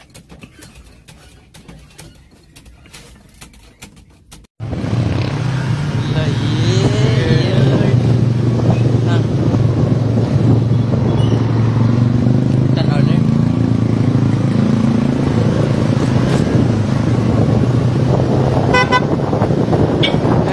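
Faint sounds for the first four seconds or so, then a sudden jump to loud, steady noise from riding in a moving vehicle: engine drone and wind over the microphone. A short horn toot sounds near the end.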